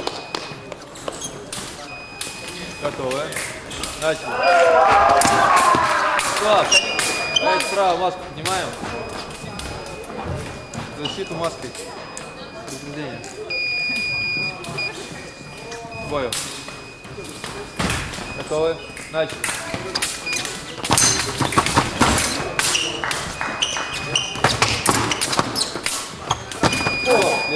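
Busy fencing hall: voices in a large reverberant room, several short electronic beeps from the scoring apparatus, one held for about a second midway. Near the end comes a quick run of sharp knocks and clatter from fencers' footwork and blades on the piste.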